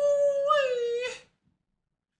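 A single long, high howl, held for about a second and a half with a slight wobble and a small lift in the middle before it cuts off.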